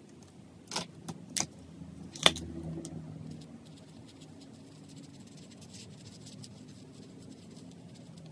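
A few sharp plastic clicks and a knock as an art marker is handled and uncapped, the loudest about two seconds in, followed by the faint scratching of the marker tip colouring on paper.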